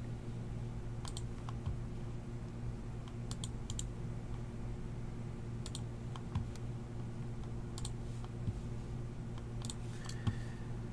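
Isolated key presses on a computer keyboard: a single click or a quick pair of clicks every second or two, with pauses between, over a steady low hum.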